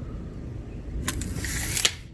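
Steel tape measure retracting into its case about a second in: a hissing rattle of just under a second that ends with a click as the hook hits the case. A low steady rumble runs underneath.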